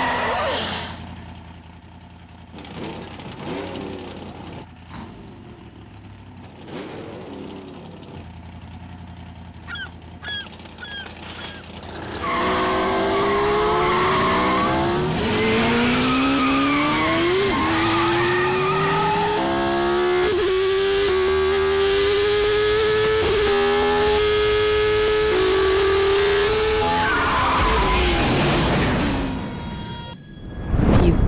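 Open-wheel race car engine, quiet at first with a few short squeals, then accelerating hard from about twelve seconds in, its pitch rising steadily for several seconds before holding a high, steady note at full revs and fading out near the end.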